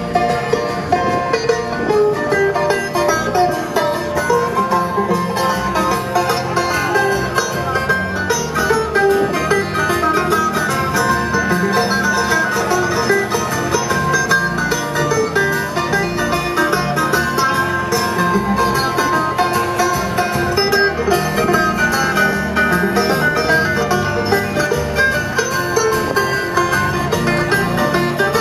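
Live bluegrass-style string band playing an instrumental passage: banjo, twelve-string acoustic guitar, mandolin and electric upright bass playing together.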